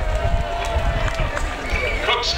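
Indistinct speech from a ceremony's public-address loudspeakers, with low rumbling on the camcorder microphone.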